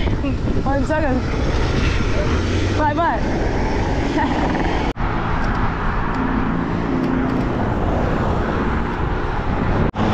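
Wind buffeting the microphone of a handlebar camera while cycling along a road, with car traffic running alongside. After a brief dropout halfway through, a steady engine hum from nearby motor traffic comes in.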